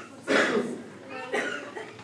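A single loud cough about a third of a second in, as loud as the speech around it, followed by a few brief voice sounds.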